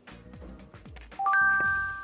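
A rising three-note chime sound effect about a second in, ringing on, marking a scored shot, over quiet background music.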